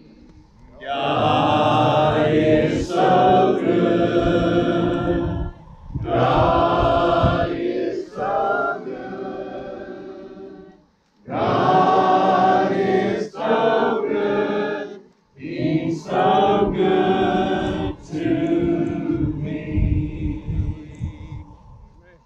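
A crowd of churchgoers singing a simple gospel chorus together, unaccompanied, in four long phrases with brief pauses between them.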